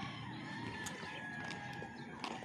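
A rooster crowing faintly: one long, drawn-out call.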